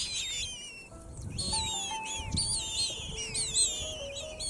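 Eurasian magpie nestlings begging with repeated high, falling calls as a parent feeds them in the nest, over background music of slow held notes.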